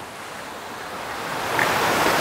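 Shallow forest stream rushing over rocks and rapids, growing steadily louder.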